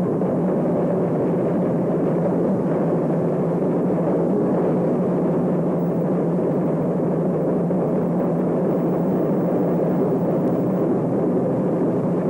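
Steady rumble of diesel locomotives running under a station train shed, with a constant low hum and no breaks.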